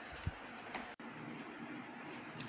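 Faint steady background hiss of a recording in a pause between spoken sentences, with a momentary cut-out about halfway through.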